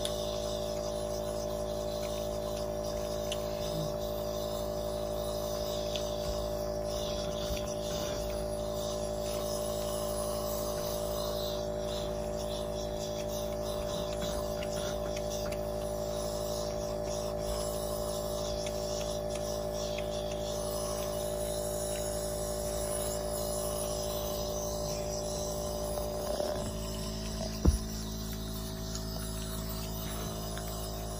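Compressor nebulizer running with a steady, even drone during a breathing treatment. Near the end the drone shifts briefly and there is one sharp click.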